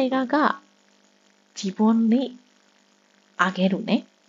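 A person's voice speaking three short phrases with pauses between them, over a faint steady electrical hum.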